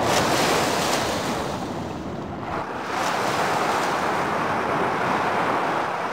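Small waves washing up onto a sandy beach, the surf swelling and ebbing with a lull about two seconds in.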